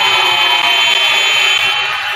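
Basketball scoreboard buzzer sounding one long, loud buzz that stops near the end, signalling a stop in play.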